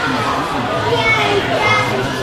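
Overlapping children's voices, shouts and chatter from a youth soccer game in an indoor sports hall.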